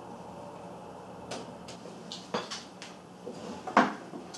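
Light clicks and knocks of small plastic and metal RC crawler chassis parts being handled as the shock-hoop screws come out and the rear shock hoops are worked loose. It is quiet for about the first second, then about six sharp taps follow, the loudest one near the end.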